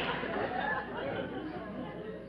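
Studio audience laughter dying away, with faint, indistinct talk on stage underneath.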